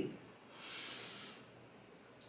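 A single faint audible breath, a soft hiss lasting about a second.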